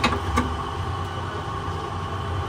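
Commercial electric juicer motor running with a steady low hum, with a couple of light metal clinks near the start.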